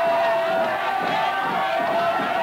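A crowd of voices shouting together over music with sustained held notes.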